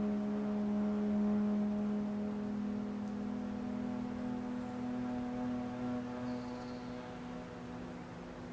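Ambient film-score drone: several low tones held steadily together, slowly fading toward the end.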